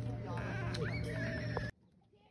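Voices and pitched calls over a steady low hum, cut off abruptly near the end, leaving only faint distant voices.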